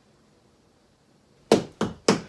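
Quiet room tone, then about a second and a half in two sharp knocks a third of a second apart, as a hand works the aluminium sliding window.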